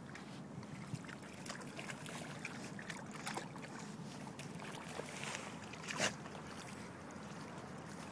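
Retrievers splashing and digging in a shallow mud puddle: irregular sloshes and splats of muddy water, with one louder splash about six seconds in, over a steady background hiss.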